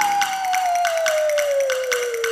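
A break in the background music: one clear whistle-like tone slides slowly downward while a quick, even run of clap-like percussion ticks keeps time, with the bass and brass dropped out.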